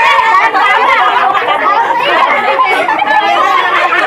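Many children's voices chattering and calling out at once, overlapping into a loud, unbroken babble.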